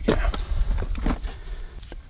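Handling noise from a tractor's wiring harness being pulled out from behind the dash: a run of small clicks, knocks and rustles from the plastic connector and its wires moving against the panel.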